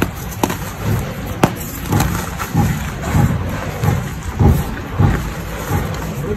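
Hands crushing and squeezing chunks of reformed gym chalk into powder: soft, muffled crunching thuds about every half second to second, with a couple of sharp cracks in the first second and a half. A steady low background noise runs underneath.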